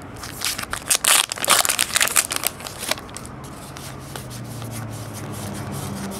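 A baseball card pack wrapper being torn open and crinkled, loud crackly rustling for about two seconds near the start. A quieter steady low hum follows in the second half.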